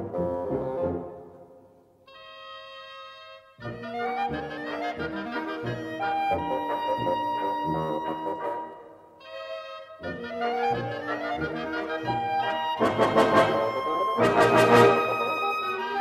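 Military wind band of brass and woodwinds playing a lively burlesque. About two seconds in, the music dies away to a short held chord, then starts again and builds to loud full-band passages with sharp accented strokes near the end.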